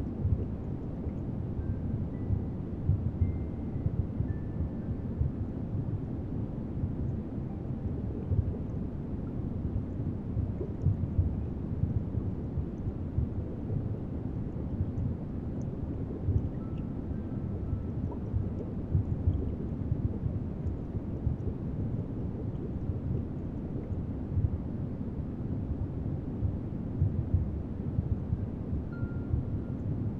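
Steady low rumbling noise with frequent irregular surges, and a few faint, brief high tones now and then: a designed ambient rumble under a guided meditation.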